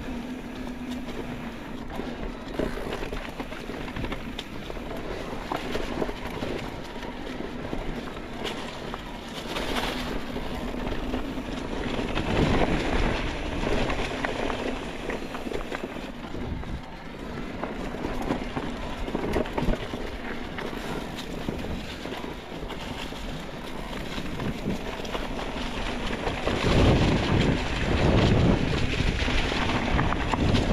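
Electric mountain bike riding fast down dry singletrack: knobby tyres crunching over fallen leaves and dirt, the bike rattling over bumps, and wind rushing over the camera microphone. It gets louder in the last few seconds.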